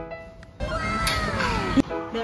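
A single drawn-out meow that rises slightly and then slides down in pitch for about a second, cut off by a sharp click. Before it, the last notes of a short music sting fade out.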